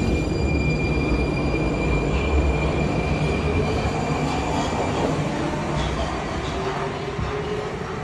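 Prague metro train pulling out of the underground station, a heavy rumble with a steady high-pitched tone over roughly the first half. The sound eases off as the train leaves.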